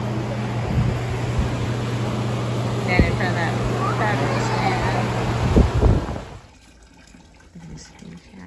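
Busy restaurant dining room: a steady low hum under a wash of background voices and clatter, with a few knocks, cutting off suddenly about six seconds in to a much quieter scene.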